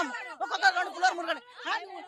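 Speech only: people talking, in Telugu.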